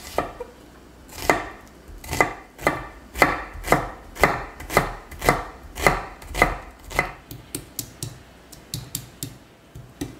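Chef's knife slicing through an onion on a wooden cutting board, each cut ending in a knock of the blade on the board, about two cuts a second. Near the end the cuts turn into faster, lighter taps.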